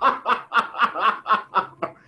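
A man laughing in a rhythmic run of short 'ha' pulses, about four a second, that fades off near the end.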